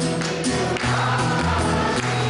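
A Bengali song performed live, a male singer at a microphone with musical accompaniment.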